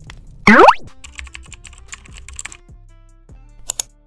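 A steeply rising swoop sound effect about half a second in, then a quick run of computer-keyboard typing clicks over soft background music, with two sharper clicks near the end.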